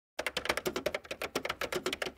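Typing sound effect: a rapid run of key clicks, about ten a second, starting a moment in, laid over text being typed out on screen.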